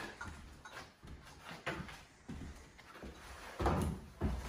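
Scattered light knocks and clicks of handling as a length of crown molding is set on a miter saw stand and clamped in place with a quick-release bar clamp, with a louder knock near the end. The saw is not running.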